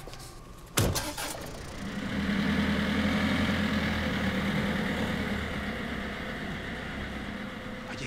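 A car door shuts with a sharp thump about a second in. Then the compact van's engine starts and runs with a steady low hum, easing off a little near the end.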